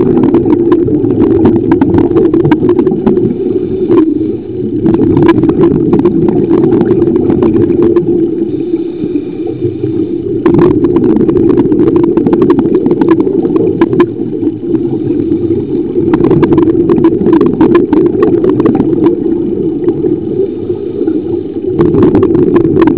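Muffled underwater noise picked up by a camera held under water: a loud, steady low rush of moving water with scattered crackles and clicks.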